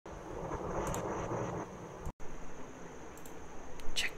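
Microphone feed cutting in from dead silence: steady background hiss with a thin high whine, a brief dropout about two seconds in, and a few sharp clicks near the end.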